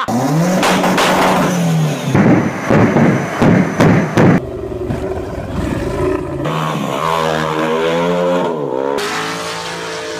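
Car engines revving loudly, cut together from several clips. A run of sharp bangs comes between about two and four and a half seconds in. From about six and a half seconds an engine note rises and falls.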